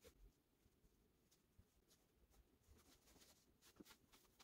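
Near silence: room tone, with a faint tick near the end.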